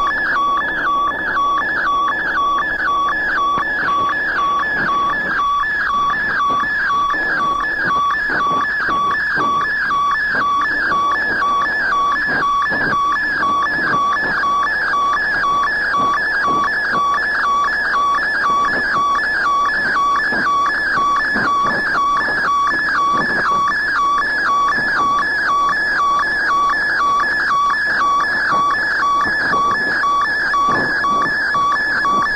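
Experimental electronic music from a cassette: a looping electronic tone that flips quickly and evenly between two pitches, like a two-tone siren warble, over a noisy, rumbling undertone.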